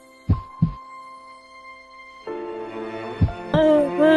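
Suspense music of held tones with a heartbeat sound effect: a double low thump about a third of a second in and another thump past three seconds. The music swells a little over two seconds in. Near the end a woman's sobbing cry rises over it.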